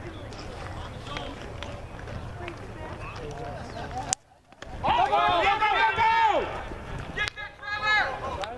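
A single sharp crack of a bat meeting a baseball about four seconds in, followed by loud shouting voices for about a second and a half. Another click and more yelling come near the end, over a steady outdoor murmur.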